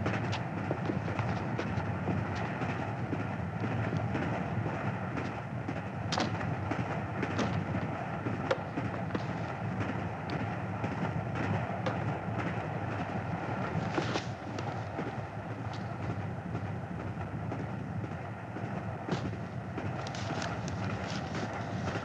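Steady rumble of a moving passenger train heard from inside the carriage, with a few short sharp knocks and clicks now and then.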